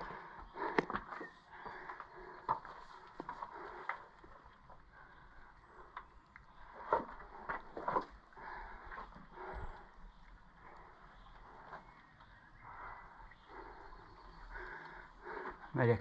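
Footsteps and scrambling on limestone rock with camera handling noise: irregular scuffs, scrapes and knocks, a few louder ones about halfway through.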